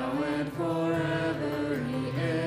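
Worship music: voices singing long held notes of a gospel song, moving step by step between pitches, over steady instrumental accompaniment.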